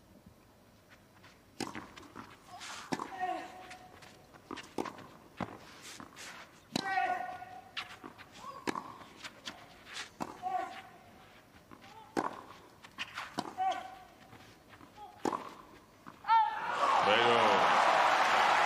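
Tennis rally on a clay court: racquet strikes on the ball about every one to one and a half seconds, several followed by a player's short grunt. Near the end a player shouts as the point is won, and the crowd breaks into loud cheering and applause.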